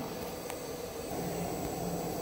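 Faceting bench's ordinary electric motor running steadily and turning the lap through its belt drive, a fairly quiet, even hum and whir. A single faint click comes about half a second in.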